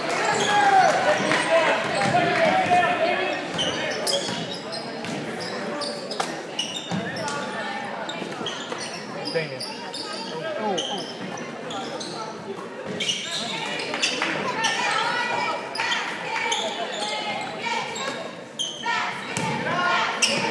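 Basketball bouncing on a hardwood gym floor during a game, with spectators' voices and shouts, echoing in the large hall.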